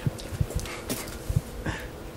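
A few soft, short thumps over a steady low hum.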